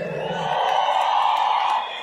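Large stadium crowd cheering and screaming in response to a band member being introduced, swelling and then fading away near the end.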